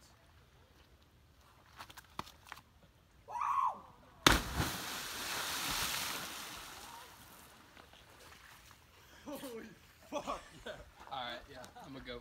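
A cliff jumper hitting the water far below: one sharp smack about four seconds in, then a rushing splash that fades over about three seconds. A short shout comes just before the impact, and voices rise from the water near the end.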